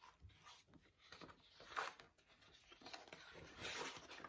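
Faint rustling of a large paperback picture book's pages being handled and turned, with a louder rustle about two seconds in and another near the end.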